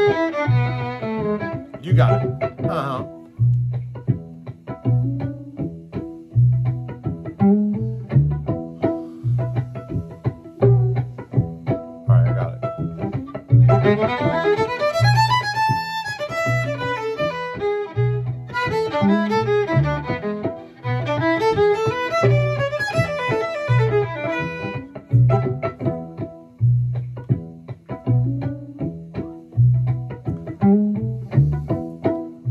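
Fiddle playing improvised lines in E, phrase by phrase with short gaps between, over a backing groove with a steady, regular low bass pulse.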